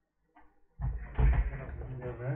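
Handling noise: bumps and rubbing as a closed laptop is set down on a desk, starting about a second in and loudest just after.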